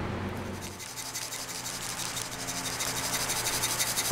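Small brassica microgreen seeds rattling inside a plastic shaker as it is gently shaken to broadcast them over a seeding tray, a fast, even, scratchy rattle.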